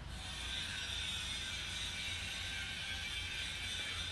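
Steady construction-site machinery noise: a continuous mechanical whir over a low rumble.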